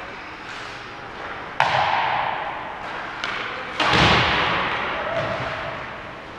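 Rink boards struck during ice hockey play: two loud bangs about two seconds apart, each echoing through the arena, with lighter clicks between them.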